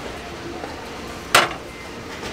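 A glass shelf of a metal-framed tiered glass stand clinks once, a single sharp knock about halfway through.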